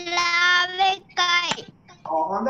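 A voice singing: one long held note, then a short sliding note that falls in pitch about a second and a half in, before a brief pause.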